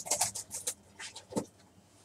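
Trading cards being handled: several short rustles and clicks in the first second and a half, then almost nothing.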